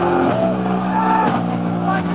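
Live doom metal band playing loudly: heavily distorted electric guitars and bass hold sustained chords while a lead guitar bends notes up and down.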